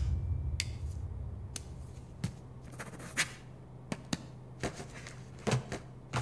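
Faint, scattered clicks and taps of a pen and papers being handled at a desk as documents are signed, over a steady low hum.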